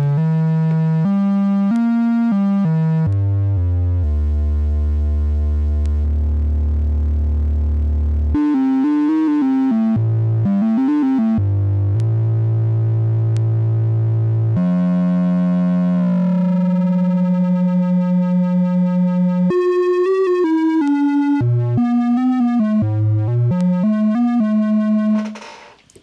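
Cherry Audio Minimode, a software Minimoog Model D synthesizer, playing a monophonic line of notes that step up and down. About sixteen seconds in, a held tone's brightness sweeps down, and from then on the sound pulses rapidly in loudness as Oscillator 3 modulates it like an LFO. The playing stops just before the end.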